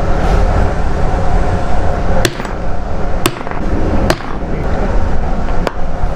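Hammer blows setting metal snap fasteners into a cushion cover: four sharp strikes, the first about two seconds in and the rest roughly a second apart. A steady low rumble runs underneath.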